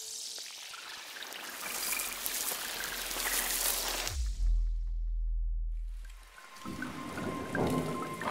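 Logo-reveal sound design: a hissing, rushing whoosh builds for about four seconds, then a deep bass boom drops in and holds for about two seconds. A bright, glittering shimmer with a steady high tone follows near the end as the logo appears.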